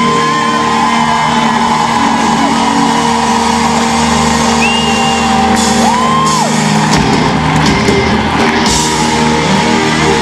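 Live rock band playing long held notes in a large hall while the crowd shouts and whoops.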